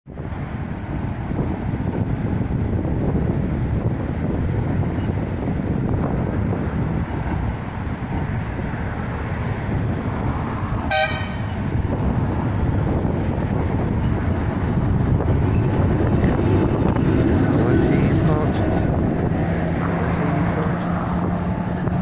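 A vintage tram gives one short horn toot about eleven seconds in as it approaches. Around it is a steady rumble of wind on the microphone and road traffic, and a low steady hum comes in near the end as the tram draws close.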